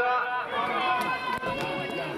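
Several voices shouting encouragement, overlapping, with a couple of brief sharp clicks around the middle.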